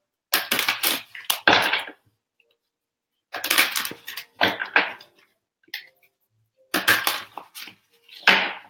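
A deck of tarot cards being shuffled by hand, in three spells of crackling card noise a second or two long.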